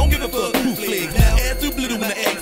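Hip hop music: rapped vocals over a beat, the deep bass dropping out just after the start.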